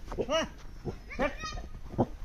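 Two short, high-pitched animal calls, the first rising and falling quickly, the second a little later and longer.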